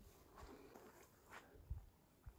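Near silence: faint rustling with a couple of soft low thumps near the end, like handling or shifting footing on grass.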